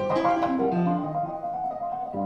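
Piano and keyboards played live by a duo: a quick line of short notes stepping downward in the middle range beneath a held higher note, between fuller chords.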